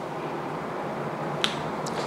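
Two short clicks from a whiteboard marker, a sharp one about one and a half seconds in and a fainter one just after, over a steady room hiss.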